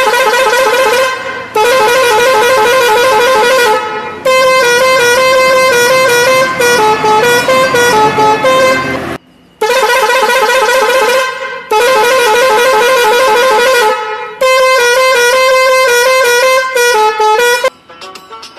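A bus's musical pressure horn playing a loud, warbling multi-note tune in six phrases of about two to five seconds each, with short breaks between them.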